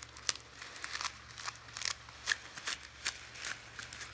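Dry, irregular clicks and crisp rustles of a bundle of bear grass blades being handled as a rubber band is wound tight around it.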